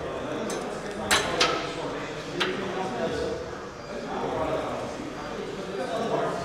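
Sharp metallic clinks from a Smith machine bar being unhooked to start a set of presses: two close together about a second in, a third a second later. Under them runs a murmur of voices and gym noise.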